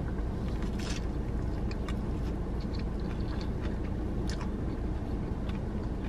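Someone biting into and chewing a crispy tortilla Mexican pizza, a few faint crunches scattered through the chewing, over a steady low hum inside a car cabin.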